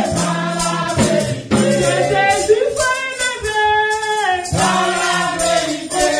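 A woman singing a gospel worship song into a microphone, holding long notes, with other voices joining in and a tambourine shaken in steady rhythm.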